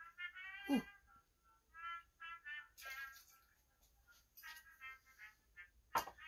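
Faint background music: short, high melodic notes in small runs, with gaps between them.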